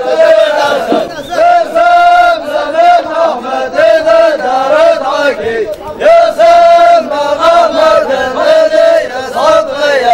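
A group of men chanting in unison, loud and continuous, in the sung phrases of a traditional group chant.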